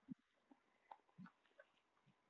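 Near silence outdoors, with a few faint, scattered soft taps and crunches.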